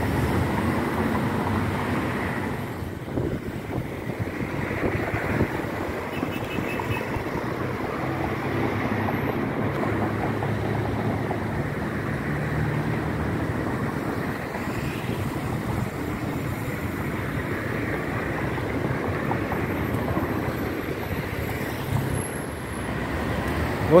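Steady city road traffic noise, the mixed rumble of cars going by on a nearby street.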